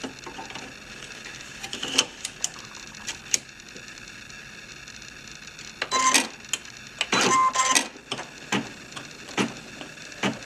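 Brother computerized embroidery machine being readied to stitch: scattered clicks and knocks as the fabric and hoop are set in place, then two short motorised bursts about six and seven seconds in, the second with a steady whine.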